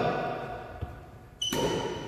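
A court shoe squeaking on a sports-hall floor: one sudden high-pitched squeak about a second and a half in, after a faint thud.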